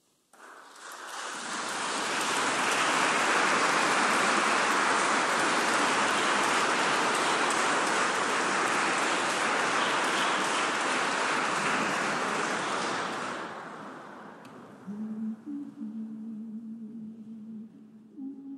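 Audience applauding, starting abruptly and fading out after about thirteen seconds. Near the end, low held musical notes begin.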